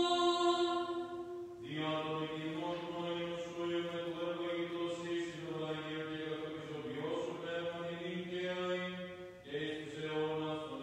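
Byzantine liturgical chant sung by a male voice, unaccompanied. The line moves to a lower pitch about two seconds in and pauses briefly near the end.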